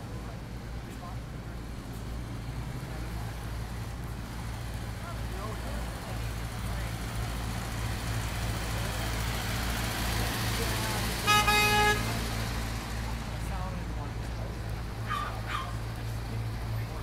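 City street traffic running steadily, swelling as a vehicle passes, with one short car horn honk a little past the middle that stands out as the loudest sound.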